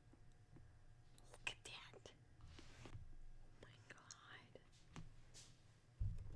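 Faint whispering in short breathy stretches, with a few soft clicks.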